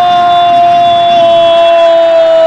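A man's single long, held goal shout at one steady high pitch, very loud.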